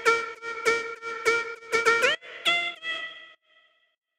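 Spire software synthesizer playing a lead line: about eight short repeated notes on one pitch, a quick upward pitch slide, then two higher notes, stopping a little past three seconds in.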